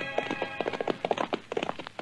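Radio-drama sound effect of horses' hoofbeats, a quick irregular run of knocks, right after the last of a music cue.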